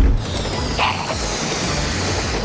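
Cartoon sound effect of a balloon inflating out of a toy train's chimney: a low thump at the start, then a continuous crackly stretching sound with a brief brighter burst about a second in, over light background music.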